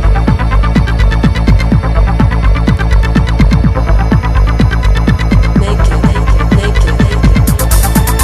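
Old-school techno from a DJ mix: a heavy, steady bass drone under a fast, regular kick drum whose strokes drop in pitch. Crisp hi-hats come in near the end.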